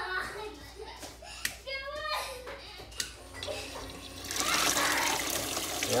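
Water from a battery-powered turbo transfer pump gushing out of its hose into an empty plastic bucket, starting suddenly about four seconds in and running steadily and loudly. A low hum, the pump's motor, begins a moment before the water arrives.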